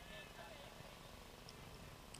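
Near silence: faint distant voices over low open-air background noise, with a faint tick about one and a half seconds in.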